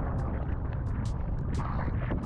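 Choppy sea water splashing and sloshing around a waterproof action camera at the surface, over a steady low rumble of wind on the microphone, with short splashy hisses coming irregularly several times a second.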